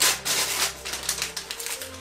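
Wrapping paper being torn and crinkled by hand as a small gift is unwrapped: a sharp rip at the start, then a quick irregular run of crackles and rustles.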